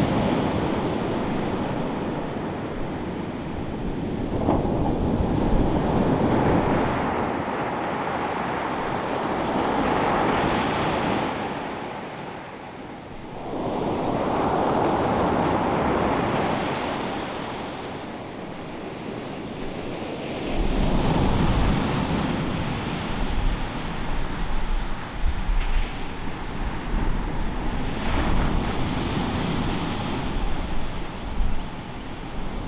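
Ocean surf breaking on a beach, the wash swelling and fading every few seconds. In the second half, wind buffets the microphone with a low, uneven rumble.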